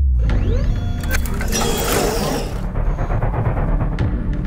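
Opening-title sting of electronic sound design: a deep boom and low drone under rising swooshes and mechanical clicking and ticking, with a hissing sweep from about one and a half to two and a half seconds in.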